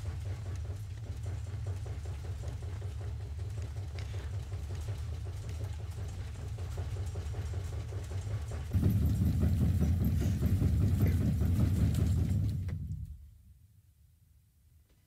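A low, deep rumble that holds steady, grows louder about nine seconds in, then fades away near the end.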